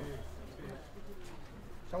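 Faint murmuring of several people's voices, with a low rumble in the first half second.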